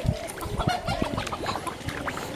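Footsteps squelching and splashing through wet mud and shallow water, irregular short knocks. A short animal call sounds a little before one second in.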